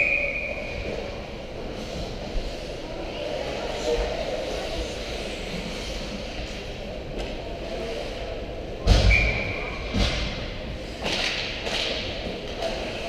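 Ice hockey play near the net: a sharp clank with a brief ringing tone at the start, a heavy thud with another ringing clank about nine seconds in, and a few smaller knocks near the end, with shouting voices around them.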